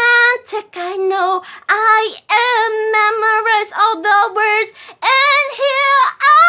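A woman singing a love song unaccompanied, in short phrases of held notes with vibrato, each phrase broken off by a brief pause for breath.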